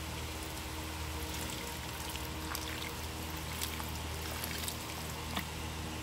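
Hot water pouring in a steady stream from an electric kettle into a pot of curry with potatoes and chickpeas.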